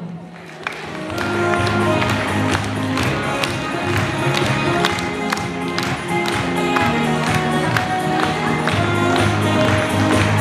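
Music with a steady beat, starting about a second in after a brief lull.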